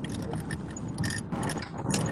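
Low rumble of a car's cabin with scattered clicks and rustles throughout.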